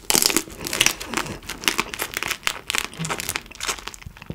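Close-miked eating of raw carabinero shrimp: biting and chewing with a dense run of irregular, wet crackling clicks.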